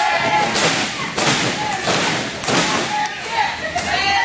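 A run of four loud thuds, about two-thirds of a second apart, in the first two and a half seconds, with people's voices around them.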